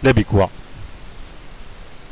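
A man's voice speaks briefly at the start, then only a steady background hiss remains.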